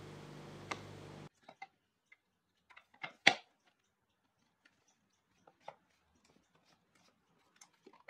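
A steady low hum that cuts off about a second in, then scattered light clicks and knocks of the wooden hinge pieces being handled and test-fitted together on a workbench, with one sharper knock about three seconds in.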